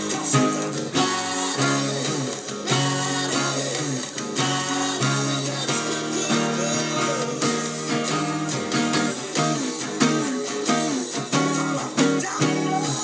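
Steel-string acoustic guitar strummed and picked along with a band's acoustic rock recording, with steady chord changes and many note attacks throughout.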